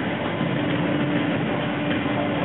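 Accompaniment music for a rhythmic gymnastics ribbon routine, played over a hall's loudspeakers and heard muffled, with a held low note under a steady rumble of room noise.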